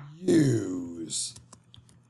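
A man's voice drawing out one spoken word, its pitch falling and ending in a hissed 'z' sound, followed by a few light computer keyboard clicks as text is typed.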